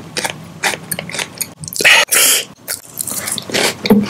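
Close-miked chewing with the lips closed: a run of soft wet mouth clicks. About two seconds in comes a loud burst of noise lasting about half a second.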